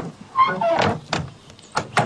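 Swarm boxes being handled onto a trailer: a sharp knock, then a scraping slide with a squeak from about half a second in, followed by a few more knocks near the end.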